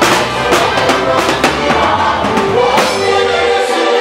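Live gospel praise band playing a sebene: electric guitar, bass guitar, keyboard and a drum kit keep a steady dance beat, with voices singing along.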